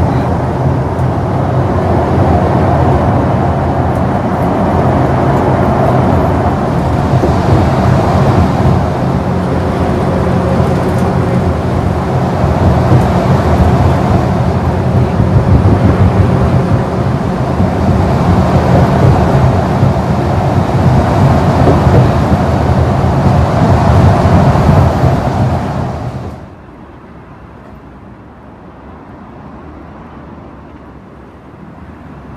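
Steady rumble of a vehicle travelling at highway speed, heard from inside the vehicle, swelling and easing a little. About four seconds before the end it cuts off abruptly to a much quieter background.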